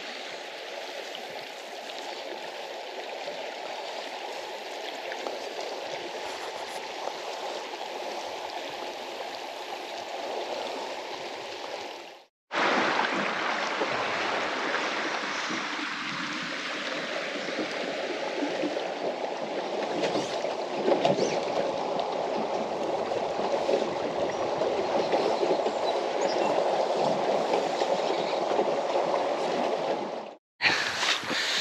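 Fast-flowing river water running steadily. It cuts out for a moment about twelve seconds in and comes back louder.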